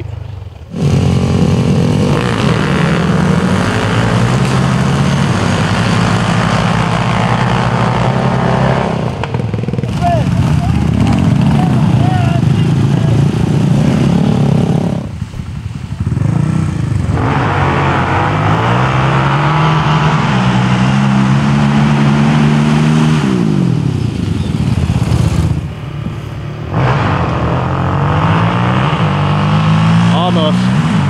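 Sport quad engines revving hard through the gears as ATVs drag race up a sand hill. The engine pitch climbs in steps with each shift and falls away, over several runs with short breaks between.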